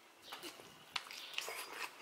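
Biting into and chewing a bacon-wrapped jalapeño: a few faint, wet mouth clicks and smacks.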